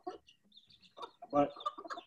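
Bantam chickens giving short, high calls and clucks as they are hand-fed black soldier fly larvae; the noise is that of birds excited by the treat.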